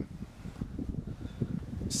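Wind rumbling and buffeting on the camera microphone, an uneven low noise with small irregular gusts.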